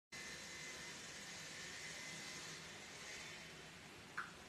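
Faint steady hiss of background room noise with a thin high whine, easing off a little in the last second or so.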